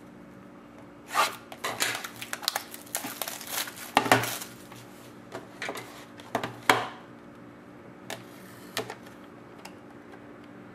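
Hands handling a sealed cardboard trading-card box and starting to cut it open with scissors: a run of irregular clicks, taps and crinkles, busiest in the first seven seconds, then a few sparse clicks near the end.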